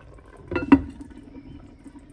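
A pot of potato stew boiling under a glass lid, with a low steady bubbling and two sharp clinks about half a second in, the second the loudest.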